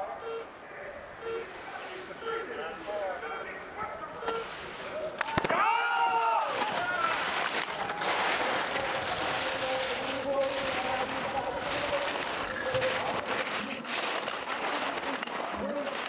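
Faint voices, then about five seconds in a sharp click as the parallel start gates open and a brief shout. After that comes a steady hiss and scrape of two racers' slalom skis carving on hard-packed snow, mixed with spectator noise.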